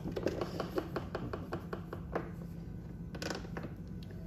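Light plastic clicking and rattling from an inspection camera's probe and cable being pushed around inside a plastic tool case: a quick irregular run of clicks for about two seconds, then a short burst a little later.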